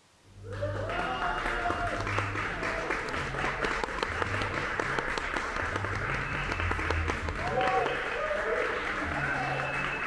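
Audience applauding and cheering, breaking out suddenly about half a second in: dense clapping with whoops and voices over it.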